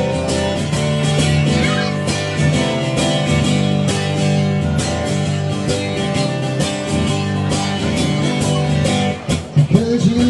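Live acoustic guitar strummed in a steady rhythm through an instrumental passage of a pop song, with a voice coming back in just before the end.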